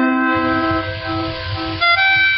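Karaoke backing music with steady sustained chords and faint low beats; a sung note held over from the previous line ends within the first half-second, and bright new tones enter near the end.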